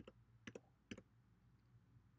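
Three faint keyboard key clicks about half a second apart, each a quick double tick, over near-silent room tone.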